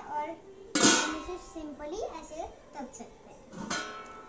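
Stainless steel kadai lid clanging against the steel pot twice, about a second in and again near the end, each strike ringing on with a bright metallic tone.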